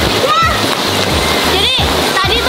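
Steady heavy rain splashing down, a continuous wash of noise, with music and a high voice over it.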